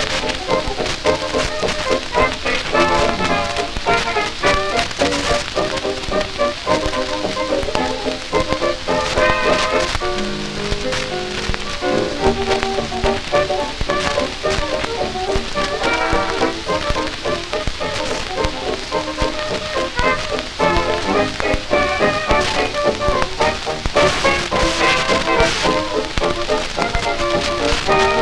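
A 1930s dance band record playing an instrumental passage with no vocal, from a Dominion 78 rpm shellac disc on a Goldring Lenco GL75 turntable. Steady surface crackle and ticks run under the music; the disc is cracked.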